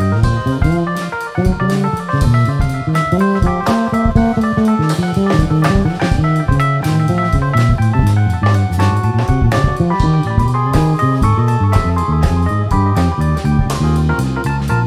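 A jazz trio of electric bass guitar, drum kit and keyboard playing live. A busy bass line of quickly changing notes runs under drums with frequent cymbal strokes and keyboard notes.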